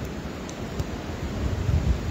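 Wind buffeting the microphone: a low rumbling noise that grows stronger in the second half.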